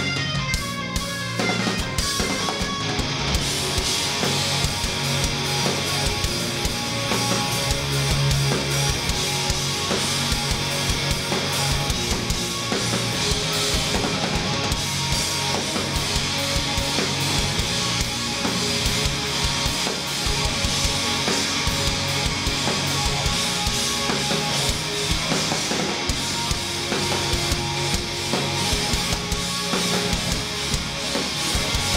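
Live rock band playing an instrumental passage: distorted electric guitars, bass guitar and drum kit, loud and continuous, with the drums and cymbals filling out the sound about two seconds in.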